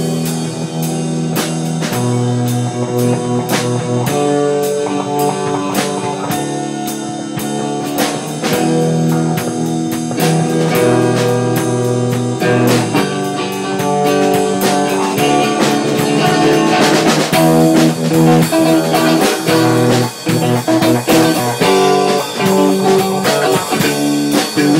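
A rock band playing a blues-rock song: guitar and bass notes over a steady drum-kit beat.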